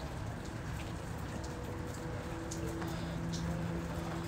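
Steady trickling and splashing of moving water from a running reef aquarium, with a faint low hum joining in during the second half.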